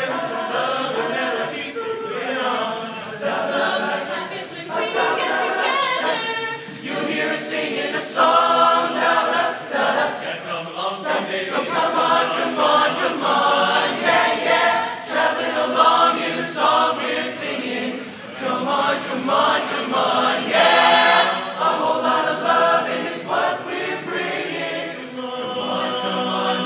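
A mixed-voice barbershop chorus of men and women singing a cappella in close harmony.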